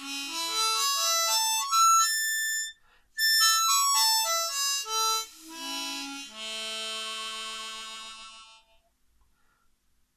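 Hohner Golden Melody diatonic harmonica with 20 brass reeds in Richter tuning, played solo: a quick run of single notes climbing upward, a brief pause, a run of notes falling back down, then a long held chord that fades out about nine seconds in.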